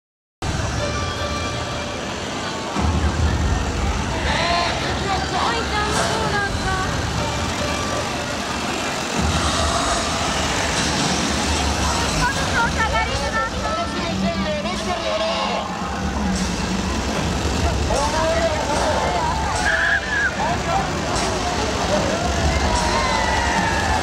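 Chainsaw engines running in a steady low drone that starts about three seconds in, under a crowd talking and calling out.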